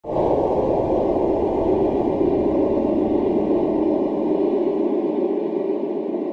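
Intro sound effect: a steady, low rushing noise that starts abruptly and holds level.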